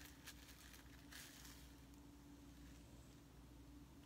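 Near silence: room tone with a faint steady hum and a few faint clicks of handling.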